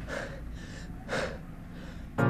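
A person's breathing: two short breaths, the second louder about a second in.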